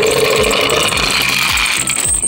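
Toy ambulance rolling fast across a wooden floor, a loud steady whirring rattle of its wheels and mechanism that dies away just after two seconds in. Background music with a steady beat plays underneath.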